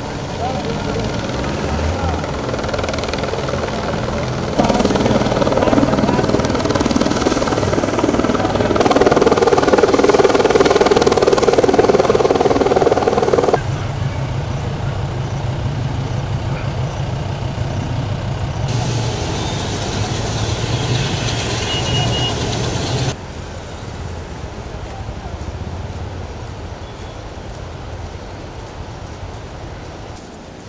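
Helicopter rotor and engine noise heard from inside the cabin, a steady rumble with fast rotor pulsing. It comes in a string of clips whose sound changes abruptly every few seconds, and the loudest is a dense rush in the first half.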